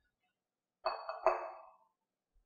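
Two sharp clinks about half a second apart, each with a brief ringing tone that fades away: a hard object struck against metal or glassware, such as the mixer's stainless steel bowl.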